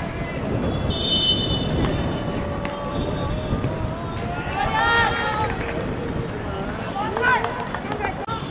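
A referee's whistle blown once for about a second, about a second in, then shouts from players around 5 s and 7 s over a steady rumble of ground noise.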